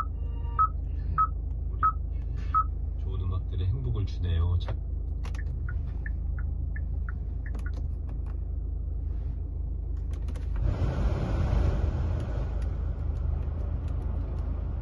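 2016 Kia Sportage head unit beeping as its touchscreen and buttons are pressed: five short evenly spaced beeps in the first few seconds, then fainter blips. About ten seconds in, a rush of air from the climate-control blower starts, strongest for a couple of seconds and then steadier, over a low engine rumble.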